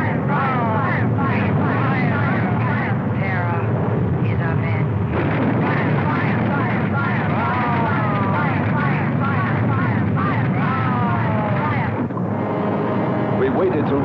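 Film soundtrack effects of a volcanic eruption: a dense, steady rumble with wailing tones over it that glide repeatedly up and down in pitch. The sound changes abruptly about twelve seconds in.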